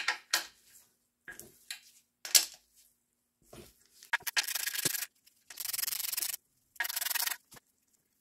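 A ratchet wrench clicking in three quick rasping runs of under a second each, backing out the 10 mm valve-cover studs from a BMW six-cylinder head, after a few light clicks of the tool being fitted.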